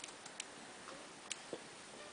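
A quiet hall with an audience waiting before a performance: faint room noise with a few small, scattered clicks.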